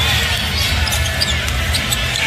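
Basketball being dribbled on a hardwood court amid arena crowd noise, with music with a heavy bass playing underneath.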